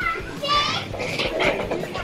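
A young girl's voice calling out briefly, high and gliding, as she slides down a stainless-steel tube slide, followed by a rushing noise of the slide ride in the second half.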